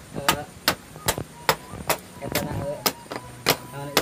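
Rhythmic chopping blows of a hatchet on a flattened split-bamboo slab, about two or three sharp strikes a second, as the inner nodes are cut out to make talupuh.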